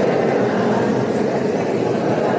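A congregation reciting a response together in a reverberant church, many voices blending into a steady murmur with no single voice standing out.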